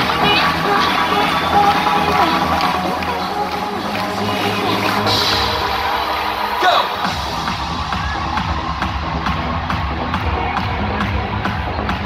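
Live dance-pop music from an arena's PA system, heard from among the audience. About seven seconds in, a deep bass beat comes in.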